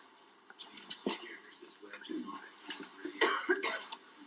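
A person coughing, twice near the end, with a smaller cough-like burst about a second in, over faint indistinct voice sounds.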